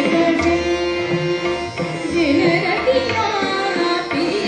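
Hindustani classical vocal music: a woman sings a long held note that bends and glides between pitches, accompanied by harmonium, a tanpura drone and low tabla strokes.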